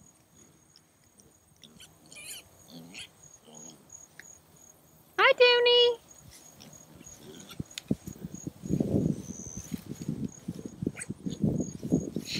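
A goat bleats once, loud and high, about five seconds in. From about eight seconds on there is close rustling and crunching of animals moving in the grass by the fence, over a faint, steady high trill of crickets.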